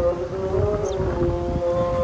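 Call to prayer sung through a minaret loudspeaker: long held notes that bend slowly in pitch, with wind rumbling on the microphone.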